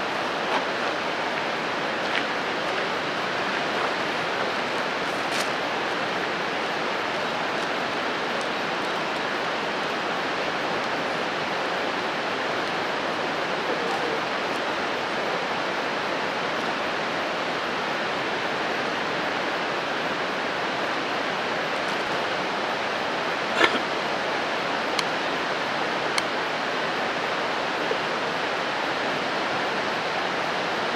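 Steady rush of the Umpqua River running high. A few short knocks come in the last third, the loudest a little past three-quarters of the way through.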